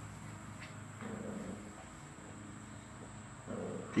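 Two puppies playing tug of war, giving faint dog noises that rise slightly about a second in and again shortly before the end, over a low steady hum.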